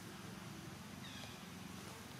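A monkey's single short, high-pitched squeak that falls in pitch, about a second in, over steady low background noise.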